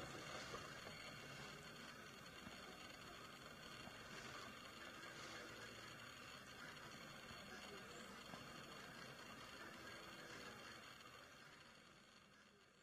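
Near silence: a faint, steady background hiss that fades out near the end.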